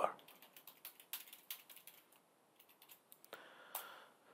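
Faint typing on a computer keyboard: a run of irregular key clicks with a short lull in the middle.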